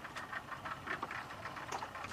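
Faint background of a small open fishing boat at sea: a low, uneven rumble with scattered light clicks.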